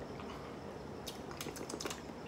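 Faint sipping and swallowing from drinking glasses, with a few small clicks and gulps in the second half.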